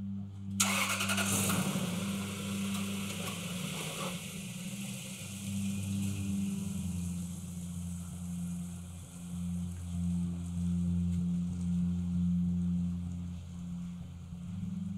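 Toyota 4Runner SUV's engine starting with a sudden rush of noise about half a second in that fades over the next few seconds, then a steady low running sound as the car moves off.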